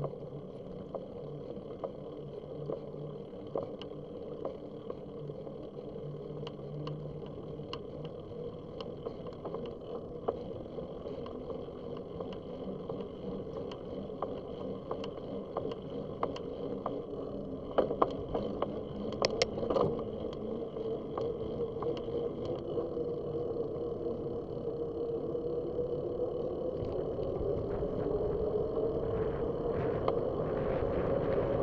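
Bicycle rolling on a paved path, heard from a bike-mounted camera: steady tyre hum and wind noise with scattered small clicks and rattles, and a cluster of louder knocks about two-thirds of the way through. The hum rises in pitch and gets louder near the end.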